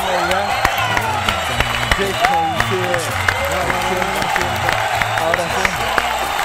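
A few people clapping and exclaiming in amazement after a magic trick, over background music with a steady beat.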